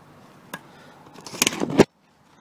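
Handling of a magnet-fishing magnet caked with rusty iron fragments: a single click about half a second in, then a louder burst of metallic rattling and scraping near the end that cuts off suddenly.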